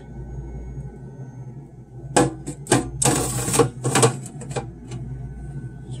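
A plastic ice-cube tray of frozen ice being handled and moved in a freezer compartment. A cluster of sharp plastic clicks and knocks comes between about two and four seconds in, with a brief scraping rattle in the middle, over a low steady hum.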